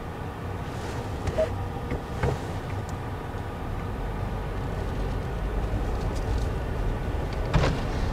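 Low, steady rumble of a car's engine and road noise heard from inside the cabin as it drives slowly, with a few faint clicks and a sharper knock near the end.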